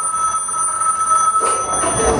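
A telephone ringing on the performance soundtrack: a steady, high ring that stops about one and a half seconds in.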